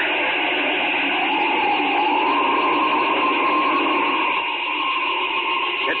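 Radio-drama sound effect of an avalanche starting: a steady rushing rumble with a held tone through it that glides up slightly about a second and a half in and then holds, heard on a thin-sounding 1940 radio transcription.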